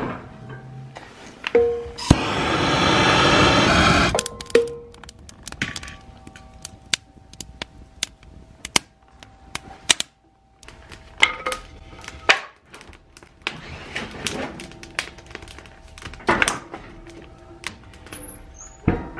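Dry pine scraps catching fire and crackling in a wood stove's firebox, sharp irregular cracks throughout, with a loud rushing noise for about two seconds near the start. Soft background music plays underneath.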